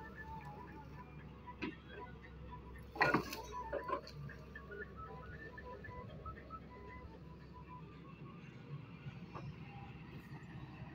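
Doosan DX140W wheeled excavator's diesel engine running steadily and low while loosened rock tumbles down the slope, with a loud clatter of falling stones about three seconds in and a few smaller knocks just after.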